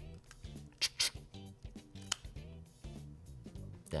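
Small plastic battery module of a Pixel Buds 2a charging case snapping back into its slot, a few sharp clicks about one and two seconds in, over background music.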